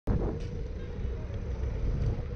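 Low, steady rumble of a road vehicle in motion, with a faint steady hum above it.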